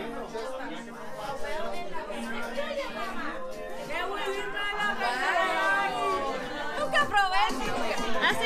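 Several people talking over one another in lively party chatter, with music playing underneath.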